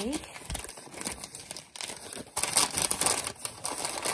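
Brown kraft-paper gift bag crinkling and rustling as a hand pulls open its flap and reaches inside, growing much louder a little past halfway.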